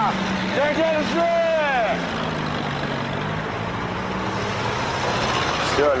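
A 1930s-style sedan's engine running steadily. Men's raised voices sound over it in the first two seconds.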